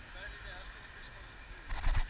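A faint voice of a second person talking in the back-and-forth of a conversation, then a short loud rumble on the microphone near the end, from wind gusting on it or the camera being bumped.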